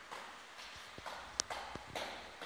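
Clopping strokes in an even rhythm, about two a second, each with a short hissy tail. A sharp click comes about two-thirds of the way through.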